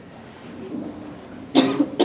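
A man coughs briefly into a handheld microphone about one and a half seconds in, after a short lull.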